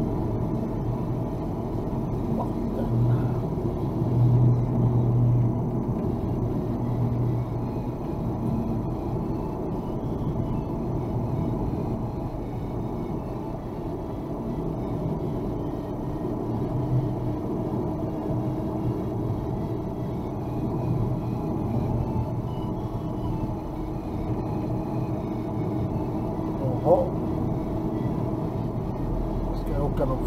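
Car driving at moderate speed, heard from inside the cabin: a steady low engine and road rumble.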